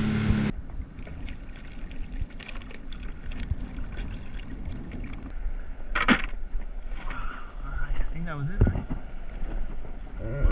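A Sea-Doo jet ski engine running at speed, cut off abruptly about half a second in. Then low water noise and small handling knocks on a paddleboard, with one sharp clack about six seconds in as a hand rummages in a plastic bucket holding a cast net.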